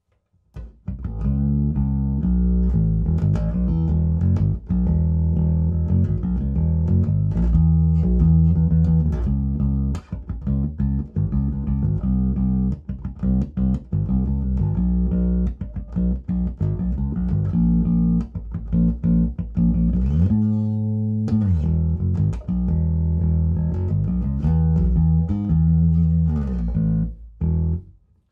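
Electric bass guitar played through a ported 2x12 bass cabinet with Beyma 12WR400 woofers and a tweeter, amp EQ flat: a continuous bass line of deep notes, very tight, starting about a second in and stopping just before the end.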